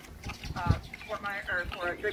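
A woman talking, with a brief low thump under her voice about two-thirds of a second in.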